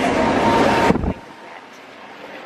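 Outdoor wind and traffic noise on the camera microphone, with a low rumble. It stops abruptly about a second in, leaving a much quieter background.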